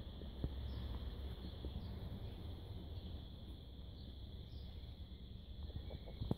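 Faint outdoor ambience: a steady high insect chirring, with small brief chirps now and then rising above it, over a low rumble.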